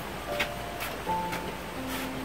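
Background music with slow, held notes, and a few light clicks of dishes being handled in a plastic basin.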